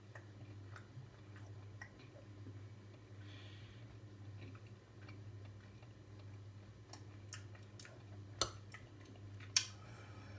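A person chewing a tender chunk of beef, faintly, with small mouth clicks, over a steady low hum. Two sharper clicks near the end are the loudest sounds.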